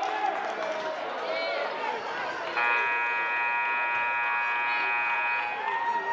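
Gymnasium scoreboard horn sounding one steady blast of about three seconds, starting about halfway through. It signals the teams back onto the court for the next period, over crowd chatter.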